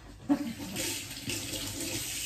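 A knock, then a kitchen tap running in a steady hiss from about a second in.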